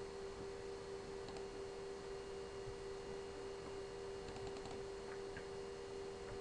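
Steady electrical hum held at one pitch, with a few faint clicks at a computer about a second in and a quick run of them past the middle.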